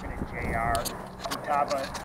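Indistinct speech: people talking in the background, in short phrases.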